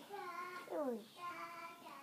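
A young boy's voice singing wordlessly to himself, with a falling slide in pitch about halfway through.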